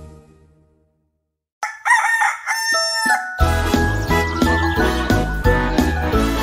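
Song music fades out into a brief silence, then a rooster crows once. About three and a half seconds in, bouncy children's-song music with a steady beat starts.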